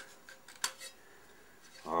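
A few light metallic clicks, the sharpest just over half a second in, as the metal contact-breaker cover of a British Anzani outboard's flywheel magneto is lifted off by hand.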